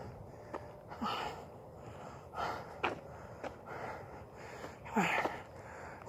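A man breathing hard and heavily with exertion: a few loud, strained breaths and grunts spaced out over several seconds, with faint footstep clicks between them.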